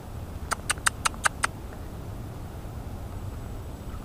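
An animal's call: a quick run of six short, high chirps, about five a second, about half a second in, over a steady low rumble.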